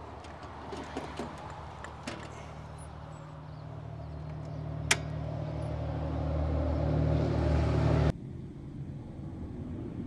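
A 20-amp cord plug is handled and pushed into an RV power pedestal's outlet, with small clicks and one sharp click about five seconds in. Under it a steady low engine rumble grows louder, then cuts off abruptly about eight seconds in, leaving a quieter, even background.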